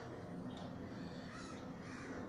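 Faint bird calls in the background: a few short calls, about half a second in and again past the middle, over quiet room tone.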